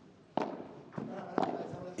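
Three sharp knocks of a padel ball on a court between points, the first the loudest, over a low arena murmur.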